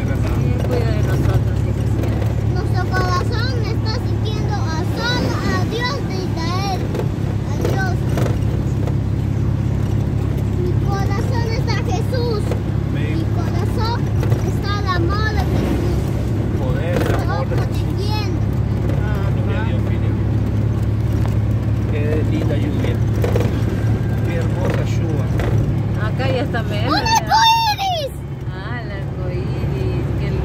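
Small motorhome's engine running with a steady low drone inside the cab while driving in the rain, with indistinct voices over it.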